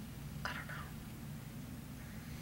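A woman says a single short word, "I", about half a second in, then stops; the rest is a steady low background hum.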